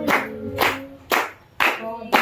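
A small group clapping hands together in time, about two claps a second, with voices over the clapping.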